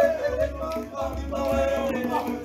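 Male a cappella group singing in harmony, the voices holding long notes that bend from one pitch to the next.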